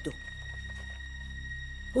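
Background drama score: a sustained, even drone with a steady high tone over a low hum.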